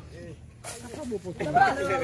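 A short hiss about half a second in, followed by several people's voices calling out at once.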